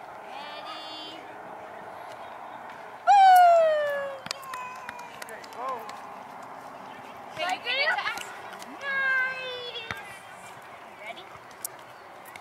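Young children's voices squealing and calling out during play, the loudest a long falling squeal about three seconds in, with more high calls around eight and nine seconds, over a steady background noise.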